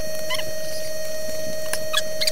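Short, high squeaky calls of a small animal, one about a third of a second in, over a steady hum, with a couple of sharp clicks near the end.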